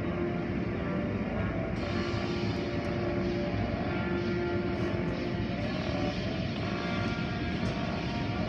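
Automatic tunnel car wash machinery, heard from inside the car: a steady rumble with a couple of held motor tones, as cloth curtain strips drag over the car. The sound turns hissier about two seconds in.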